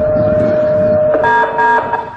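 A call to prayer sung over a mosque loudspeaker: one long held note, then a new, higher phrase about a second in.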